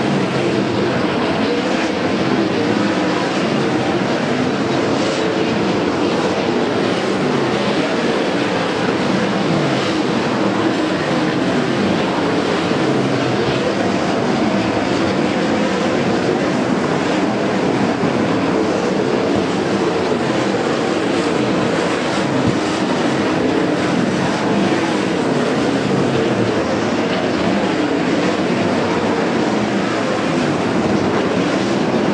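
A field of World of Outlaws sprint cars, 410-cubic-inch methanol-burning V8s, running laps on a dirt oval, their engines blending into one loud, steady drone.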